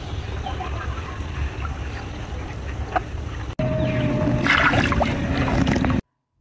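Outdoor noise with heavy wind rumbling on the microphone and no voices. A sudden cut a little past halfway brings a louder stretch of the same noise with a faint steady hum in it.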